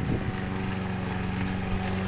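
Walk-behind lawn mower running steadily as it is pushed across the grass, an even motor hum.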